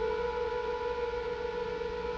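A single held note from a dramatic television music score, steady in pitch with a few overtones above it.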